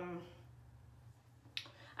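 A woman's held "um" trailing off, then a pause of small-room quiet broken by one sharp, short click about one and a half seconds in, just before she speaks again.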